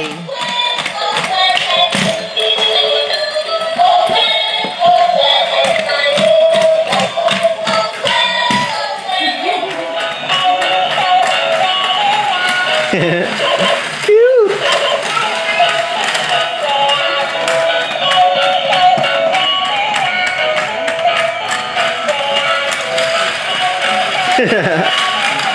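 Battery-operated puppy toy playing a tinny electronic tune, with frequent small plastic clicks running under it. A short pitch that glides up and down sounds a little past halfway.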